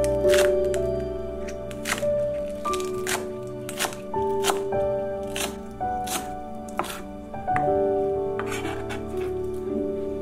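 Kitchen knife chopping green onion on a cutting board, sharp irregular chops about one to two a second, over background music with held melodic notes.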